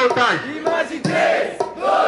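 Loud shouted male vocals through a PA microphone, with a crowd, coming in short bursts whose pitch sweeps up and down.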